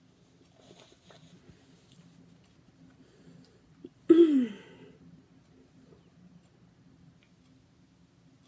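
Faint rubbing of a paper tissue wiping lipstick off the lips, broken about four seconds in by one sudden, loud vocal burst from the person that falls in pitch over about half a second, like a sneeze or cough.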